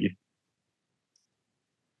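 The last syllable of a man's speech, then near silence broken by one faint, short, high click about a second in.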